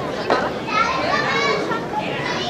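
Children's high-pitched voices calling out and chattering over a background of talk, the children's voices rising from about half a second in.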